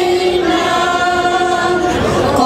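A small group of older women singing together in unison, holding long notes.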